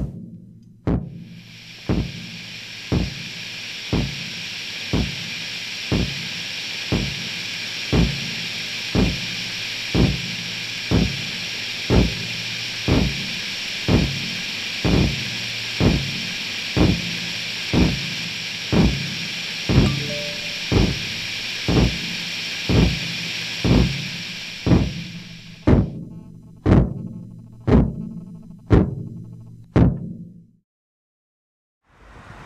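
Kick drum struck in a slow, steady beat, about one hit a second, the hits growing louder, over a steady high hiss. The hiss stops a few seconds before the end, and the last hits are sharper and brighter.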